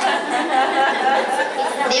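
Several voices talking at once, speech and chatter with no other sound standing out.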